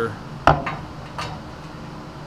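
A single sharp metal knock about half a second in, followed by a couple of lighter clicks: a steel all-thread rod being set down through the hole in a leaf-spring pack.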